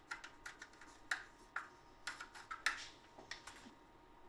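A plastic syringe tip stirring medicine and water in a small plastic cup, making a run of faint, irregular clicks and taps against the cup.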